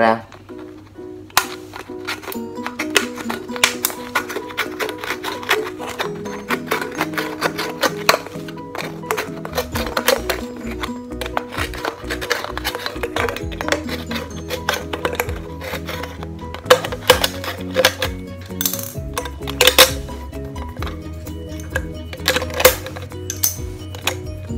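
Background music, over which a can-opener tip pries around the lid of an aluminium soda can, giving many sharp metallic clicks and scrapes, with a few louder ones in the second half.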